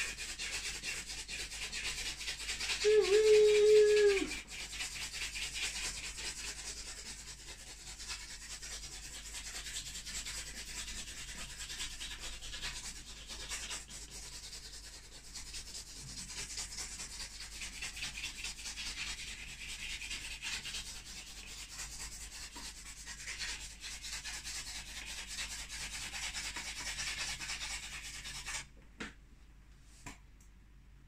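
Charcoal and pastel sticks scratching across a canvas in rapid back-and-forth strokes, a steady scratchy rasp that sounds like a steam train; it stops shortly before the end. About three seconds in, a short, loud held tone sounds for about a second.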